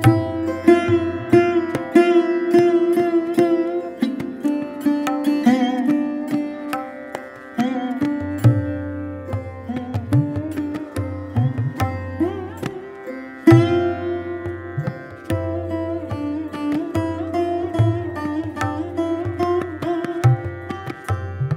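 Sarod playing plucked melodic phrases with its notes and sympathetic strings ringing on, accompanied by tabla with deep bass-drum strokes. This is a Hindustani classical instrumental performance. A sharp accented stroke falls about two-thirds of the way through.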